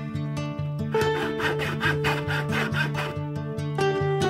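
Coping saw cutting into a wooden walking stick, with quick back-and-forth strokes about three a second from about one second in to about three seconds in, over background music of plucked strings.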